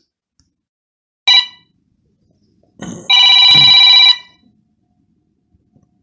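A telephone ringing for an incoming call: one short ring about a second in, then a longer ring of about a second starting around three seconds in.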